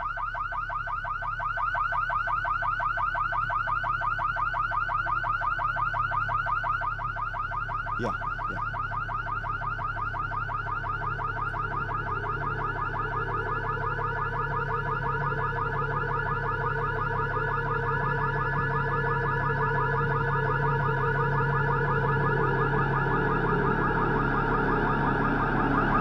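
Car alarm sounding continuously, a fast-warbling electronic tone with a low drone underneath that grows louder in the second half. It cuts off abruptly at the very end.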